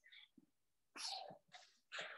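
Near silence, broken about a second in by one short, faint breathy burst from a person, a quick exhale or puff of breath.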